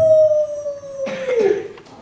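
A woman's voice through a handheld stage microphone holding one long drawn-out note that sinks slowly in pitch, then slides down with a breathy rush about a second and a half in.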